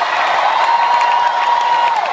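Live rock concert audio: the audience cheering while a singer holds one high note for about a second and a half, bending down as it ends.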